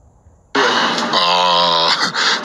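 Near silence for about half a second, then a man's voice cuts in loudly with a long, drawn-out held vowel.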